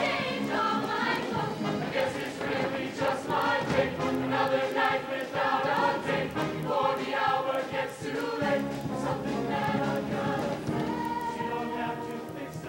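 Mixed-voice show choir singing a number together in harmony, with band accompaniment and light percussion ticks.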